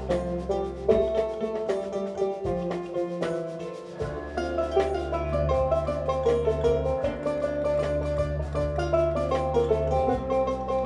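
Banjo and kora playing together, a dense run of quick plucked notes over sustained low notes. The low notes drop out for about two seconds near the start, then return.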